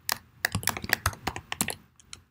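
Typing on a computer keyboard: a quick run of short key clicks as a line of code is entered.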